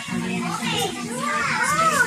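Children's voices, high-pitched calls and shouts that rise and fall in pitch, over a steady low hum.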